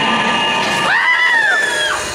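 Riders yelling, then one long high scream starting about a second in, as the Tower of Terror ride elevator drops.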